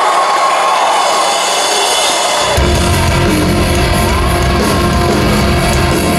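A concert crowd cheering and whooping, then about two and a half seconds in a rock band comes in loud with distorted electric guitar, bass and drums, the opening of the song.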